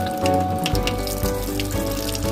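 Kitchen tap running in a thin stream into a stainless steel sink, the water splashing over a milk frother's whisk as it is rinsed. Background music plays over it.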